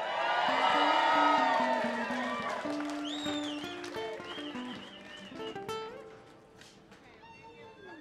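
Audience cheering and whooping in answer to the greeting, loudest in the first two seconds and then dying away, with a high whistle about three seconds in. A few held notes from an instrument on stage sound underneath.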